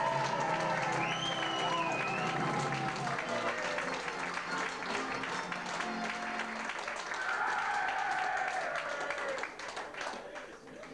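Audience clapping and cheering to welcome a band onto the stage, with rising and falling calls over the clapping; it dies down near the end.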